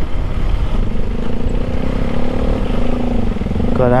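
KTM 390 Adventure's single-cylinder engine running at low speed with a steady hum over a low rumble as the motorcycle slows.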